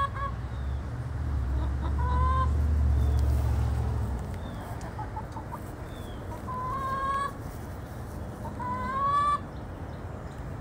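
Backyard hens calling while they forage: about four short, rising, drawn-out calls a few seconds apart, with a few faint soft clucks between them. A low rumble runs under the first four seconds.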